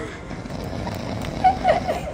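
Steady background noise, then a short burst of a voice near the end.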